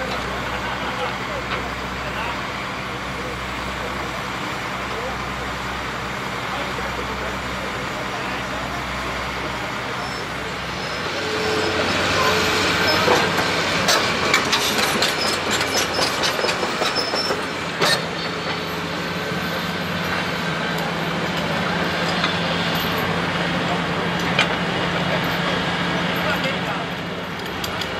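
Diesel engine of a tracked excavator running steadily. About ten seconds in it grows louder with a run of metallic clanks and clicks from the steel tracks and working gear as the machine moves. It then settles into a steadier engine drone.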